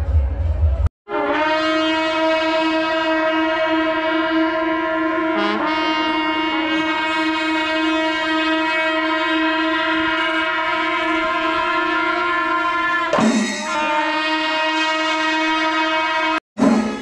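Kombu, Kerala's curved brass temple horns, sounding one long steady note together for about twelve seconds, with a brief noisy break near the end. It follows a second of bass-heavy music.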